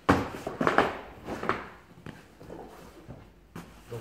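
A large fabric Rossignol Hero travel bag being handled: three sharp swishes and thumps of its material in the first second and a half as the top section is lowered, then quieter rustling.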